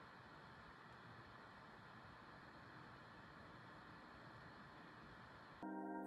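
Faint, steady rush of air from the BMAX B4 Pro mini PC's small blower cooling fan running under a CPU stress test, staying very quiet even at full load.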